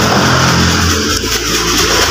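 A motor vehicle passing on the street outside: a steady rushing noise with a low engine hum underneath.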